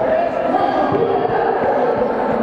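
Chatter of many voices echoing in a large indoor hall, with the quick footfalls of runners passing on the rubber track.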